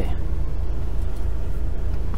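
Heavy truck's diesel engine idling, left running, a steady low rumble heard from inside the cab.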